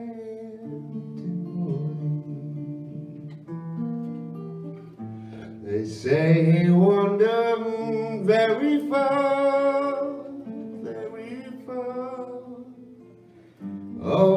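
Steel-string acoustic guitar picked alone for the first few seconds, then a singing voice comes in over it about six seconds in and carries on in phrases, louder than the guitar.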